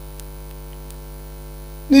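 Steady electrical mains hum, a stack of even unchanging tones, carried through the microphone and sound system. A man's voice starts speaking right at the end.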